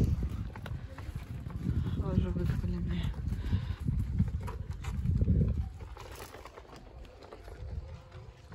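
Footsteps on a path and wind rumbling on the microphone of a handheld camera being carried while walking. The rumble eases off after about five and a half seconds, with faint voices of people underneath.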